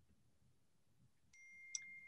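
Near silence, then about two-thirds of the way in a faint, steady, high-pitched ringing tone begins, with a brief higher tone and a small click near its start.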